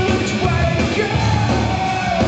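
Rock band playing live and loud, electric guitar and drums, heard from among the audience, with a long held note over the second half.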